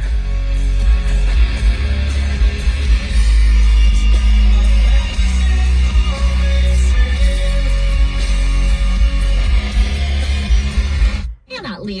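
Music with heavy bass playing loud through a Ford Fiesta ST's Sony premium sound system, with its Sony sound processor switched off; the sound cuts out sharply about 11 seconds in.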